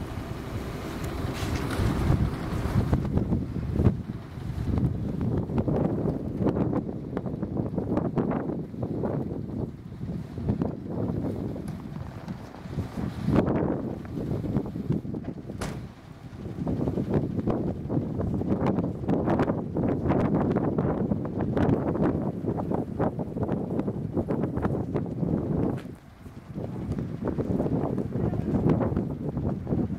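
Strong blizzard wind buffeting the microphone, a gusty low roar that rises and falls unevenly, with brief lulls about two-thirds of the way in and near the end.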